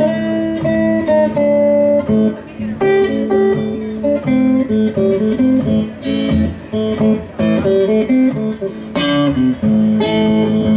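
Blues guitar intro on an electric guitar in open G (Spanish) tuning: picked single-note licks over a steady ringing bass note, with a note bent downward near the end.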